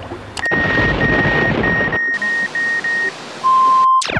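Electronic sound effect: a string of about seven short, high beeps at one pitch over static hiss, then a louder, lower steady beep lasting about half a second that cuts off suddenly.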